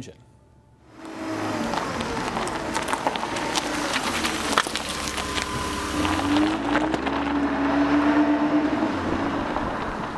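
A vehicle engine running with irregular clatter, starting about a second in, its pitch dipping and swelling in the second half.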